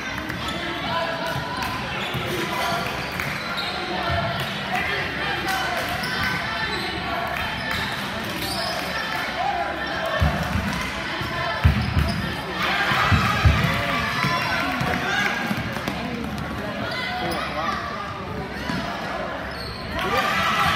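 A basketball bouncing on a gym floor, a handful of thumps about halfway through, over steady chatter from spectators.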